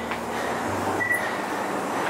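Steady rushing background noise with a low hum underneath, and a brief high tone about a second in.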